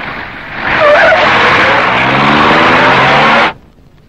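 Car engines revving with tyres screeching. The loud noisy rush starts about half a second in and cuts off suddenly near the end.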